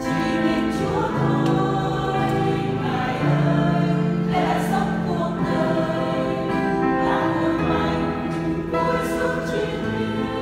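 A church choir singing a Vietnamese hymn in slow, held chords that change every second or two.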